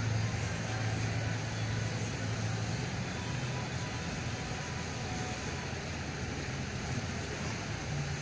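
A steady low hum over constant background noise, with no distinct events.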